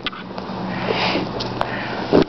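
Heavy breathing of grapplers straining in a roll, swelling about a second in, with rustling and scuffing of bodies on the foam mat and a few sharp clicks over a steady low hum.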